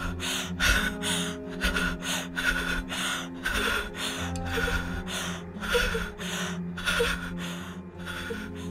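A frightened woman gasping in rapid, panicked breaths, about two to three a second, over a sustained low music drone.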